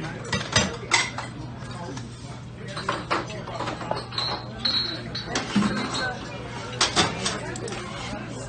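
Diner clatter: plates and cutlery clinking and knocking at several separate moments, a few short high rings in the middle, over a steady low hum and background voices.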